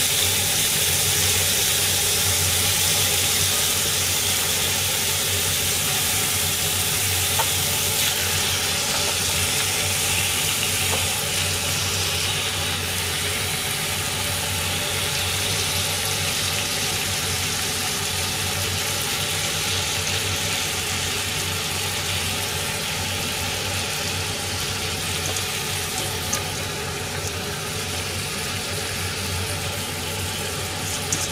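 Pork belly slices sizzling steadily in a frying pan over low heat, the frying noise easing slowly as chopped cabbage is spread over the meat.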